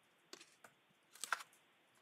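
A few faint, scattered clicks: two or three just after the start and a small cluster just past the middle.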